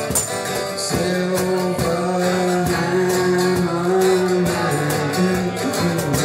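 Acoustic guitar strummed through a live song, with a long steady note held over the chords from about one second in until about five seconds in.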